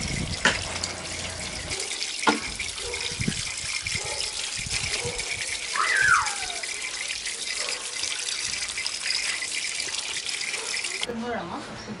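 Tap water running steadily and splashing over hands and fresh turmeric roots into a plastic basket, with a few sharp knocks. The flow cuts off suddenly near the end.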